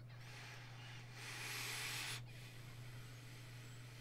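A faint rushing hiss lasting about two seconds. It swells in its second half and cuts off suddenly, over a steady low electrical hum.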